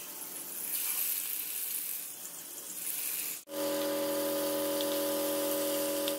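Marinated chicken pieces sizzling as they fry in hot oil in a nonstick wok. From about three and a half seconds in, a steady hum with several fixed tones sounds under the sizzle.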